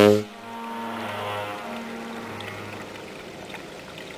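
Ship's horn: a loud blast ends abruptly a moment in. A fainter tone of the same pitch lingers for about two and a half seconds and fades away.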